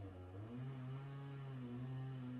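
A steady low droning hum with overtones, dipping briefly in pitch just after the start and then settling back.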